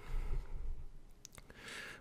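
A man's breathing close to the microphone, with a short breath in near the end, and two faint clicks a little over a second in.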